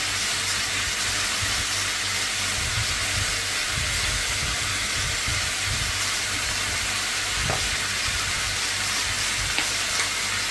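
Chopped red onion and mince frying in a pan, with a steady sizzle.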